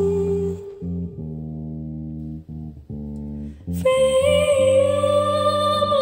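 A school band's song: a singer holds long notes over bass guitar and guitar. The voice stops about half a second in, leaving a few seconds of bass and guitar, and comes back about four seconds in with a long held note.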